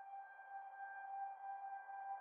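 A single faint, held electronic note from background music, slowly growing louder as the music fades in.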